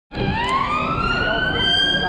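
Emergency vehicle siren wailing, its pitch climbing slowly, over a background of street noise.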